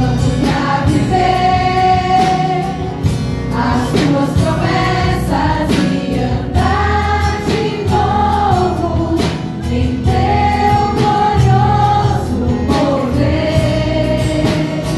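Women's choir singing a gospel song through microphones, with held, gliding notes over instrumental accompaniment with a steady beat and bass.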